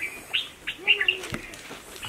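Small birds chirping: a few short, high chirps in the first half.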